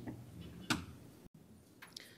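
Quiet room tone with one sharp click about a third of the way in and a fainter click near the end. Just past halfway the sound drops out completely for an instant.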